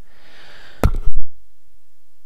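A soft breath, then just under a second in a sharp click followed by a short, loud low thump close to the microphone.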